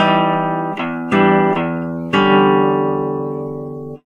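Classical guitar playing a modern, atonal passage: a few quick plucked chords, then a chord about halfway through left ringing and slowly dying away, cut off suddenly at the end.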